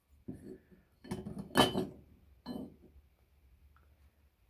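Clunks and knocks of a metal ingot mould and pliers being handled and set down on a brick: three separate knocks, the loudest about a second and a half in.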